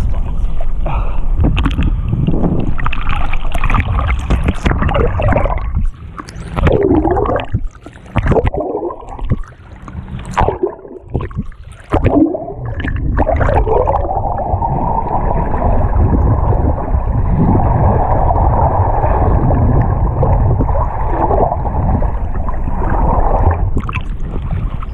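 Sea water sloshing and splashing over a camera held by a swimmer doing front crawl in ocean swell. In the middle stretch the sound drops and breaks up into bubbling and gurgling with sharp splashes as the camera dips under the surface, then it settles into a steady, muffled rush of water.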